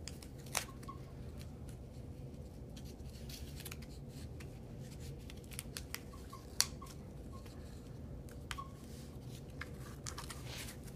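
Masking tape and cardboard being handled as a strip of tape is wrapped and pressed around the corner of a cardboard frame: scattered small crackles and clicks, with sharper snaps about half a second in and about six and a half seconds in, over a low room hum.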